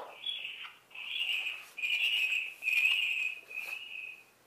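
Thin, tinny, high-pitched sound leaking from headphones held to the ear. It comes in about five short bursts of roughly half a second each, the loudest in the middle.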